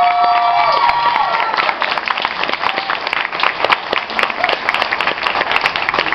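Audience and orchestra students applauding with steady, dense clapping. A single high held cheer, like a whoop, rings over the clapping in the first second and fades.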